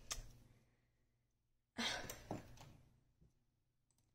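Mostly quiet room with a single breathy sigh from a person about two seconds in, fading out over half a second.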